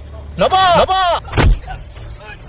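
A voice chanting a long drawn-out call, then a single deep boom about a second and a half in, over a low steady hum.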